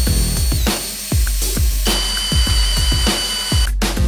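Electronic music with a steady beat, with the high steady whine of a milling machine's end mill cutting into a metal block under it.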